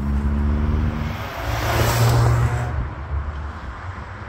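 A car driving past close by, its engine and tyre noise rising to a peak about two seconds in and then falling away, over a steady low engine note.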